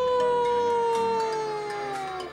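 A baby's crying: one long drawn-out wail on a single note that sags slowly in pitch and fades a little towards its end.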